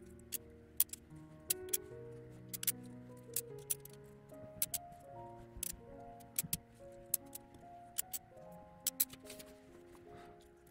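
Small glass squares clicking sharply as they are set down on a sheet of glass, about two clicks a second, over soft background music with held notes.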